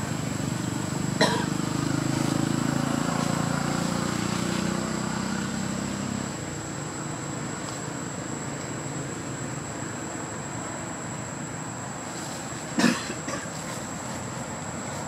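Outdoor ambience: the low rumble of a passing vehicle for the first six seconds or so, over a steady high whine, with two brief sharp sounds, one about a second in and a louder one near the end.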